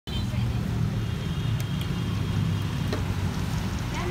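Road traffic: a steady low engine rumble from cars and motorbikes, with a few faint clicks.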